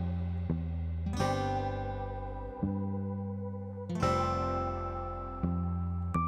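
Background music on acoustic guitar: chords struck about every second to second and a half, each one ringing out and fading.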